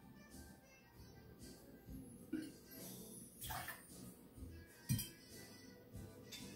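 Faint clinks and knocks of a metal jigger against glass bottles and a mixing glass as a measure of dry vermouth is poured and the bottle set down, the loudest knock about five seconds in.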